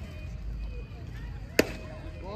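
A single sharp pop of a baseball smacking into a catcher's mitt, about one and a half seconds in, over faint background voices.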